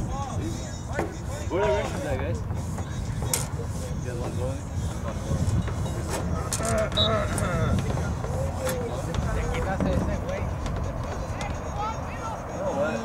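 Distant voices calling and talking across a soccer field, faint and unclear, over a steady low rumble.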